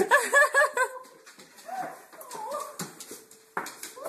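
A dog whining: a quick run of about five short, high yelping whines in the first second, then a few longer, separate whines, one drawn out and steady just before a last call near the end.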